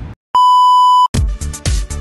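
A single loud, steady electronic beep tone lasting under a second, of the kind used as a bleep sound effect, cuts off abruptly. It is followed by upbeat electronic intro music with a steady beat.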